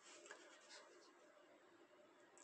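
Near silence: faint room tone with a couple of very faint rustles.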